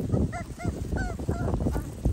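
Young schnoodle puppies giving a few short, high whimpering yips.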